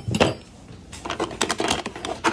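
Hands handling a hard plastic case and small parts on a table: a knock at the start, then a quick run of clicks and light knocks in the second half.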